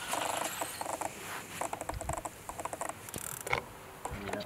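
A large spinning reel working as a hooked carp is played in: short, irregular runs of mechanical clicking and whirring from the reel's gears and line.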